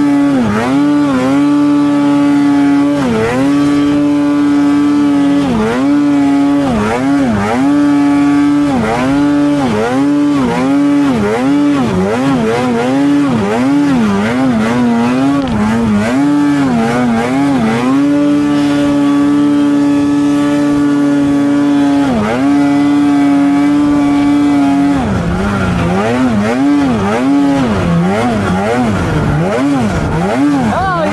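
2024 Polaris 9R snowmobile's two-stroke engine working hard on a steep climb in deep snow. The note holds steady for stretches and keeps dipping briefly and coming back as the throttle is chopped and reapplied. Near the end it runs lower and wavers up and down more.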